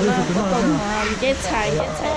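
Several people talking, over a steady rushing noise.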